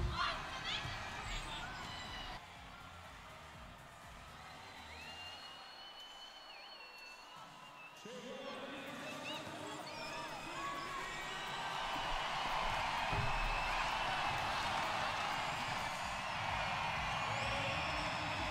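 Crowd noise in a large sports arena: quiet at first, then swelling into louder, steady chatter and cheering from about eight seconds in.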